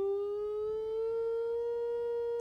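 A sine-wave tone from a loudspeaker driven by a signal generator. Its pitch rises slowly as the generator's frequency dial is turned up, then holds steady near the end.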